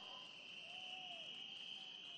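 Faint, steady high-pitched chirring of night insects, with a few faint gliding tones lower down.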